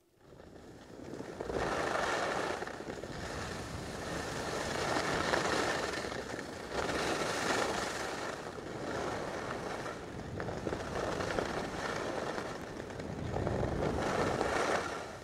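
Skis sliding and scraping over packed snow during a downhill run, with wind rushing over the microphone. The sound rises out of near silence in the first second or so, then swells and eases repeatedly.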